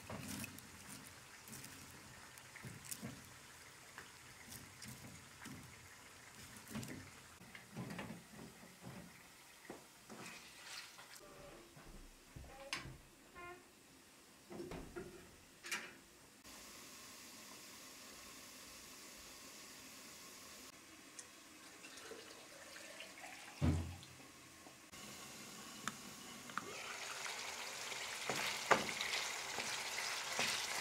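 Scattered knocks and clicks of firewood and cookware around a cast-iron wood-burning stove, with one heavier thump a little past the middle. Near the end a steady hiss builds as chicken livers cook in a pan on the stovetop.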